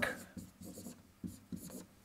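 Dry-erase marker writing on a whiteboard: about four short, scratchy strokes as a word is written out.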